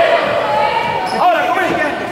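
Live indoor futsal game sound in an echoing gym hall: players and bench shouting, with the ball bouncing and being kicked on the wooden court.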